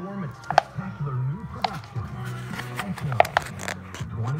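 An indistinct voice in the background, under a few sharp clicks and knocks.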